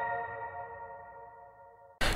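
Closing chord of a news programme's electronic ident jingle ringing out, a stack of sustained tones fading steadily away to almost nothing.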